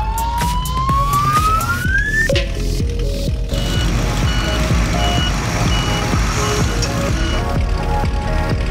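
Cartoon sound effects over upbeat background music: a single whistle-like tone slides steadily upward for about two seconds, then a few seconds of noisy vehicle rumble with short high beeps repeating about twice a second.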